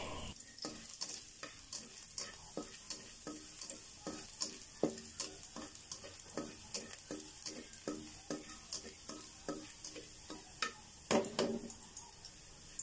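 A spatula scraping and tapping a metal pan while sliced garlic is stir-fried, about two to three strokes a second, some with a brief metallic ring, over a faint sizzle. Two louder knocks come about eleven seconds in.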